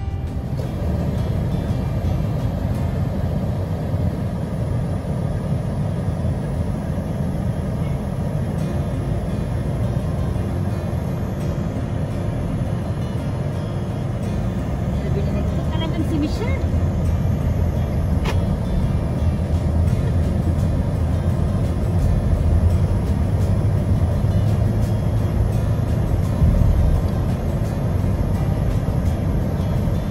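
Steady low rumble of road and engine noise inside a moving car's cabin, growing slightly louder past the middle.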